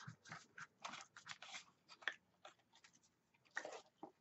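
Faint rustling and crinkling of paper and cardstock scraps being handled, in short scattered bursts, with a slightly louder rustle near the end.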